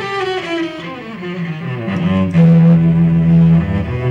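Cello and pipe organ playing classical music together. A falling phrase gives way, about two seconds in, to a loud held low note.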